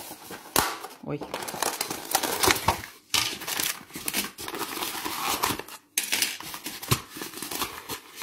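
Crinkling and rustling as the film lid of an instant-noodle foam tray is peeled off and handled, then light crackling as fingers handle the dry, brittle noodle block in the tray.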